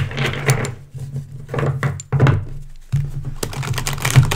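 A deck of tarot cards being shuffled by hand: a run of irregular soft slaps and rustles.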